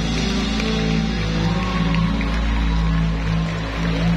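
Live rock/pop band playing: drums, bass, electric guitars and keyboards with held low notes, heard through the arena's PA from the audience stands.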